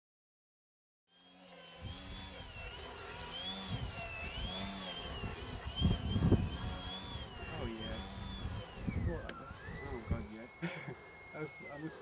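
The electric motor and propeller of a radio-controlled biplane whine as it prop-hangs, starting about a second in. The pitch wavers up and down with the throttle and drops sharply once near the end. Gusts of wind buffet the microphone underneath.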